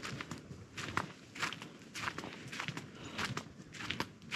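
Footsteps on a forest path of dead leaves and bark chips, walking at a steady pace of about two steps a second.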